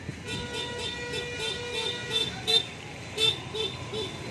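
A vehicle horn sounding in quick repeated beeps, about three a second, with a couple of louder blasts in the second half, over low traffic rumble.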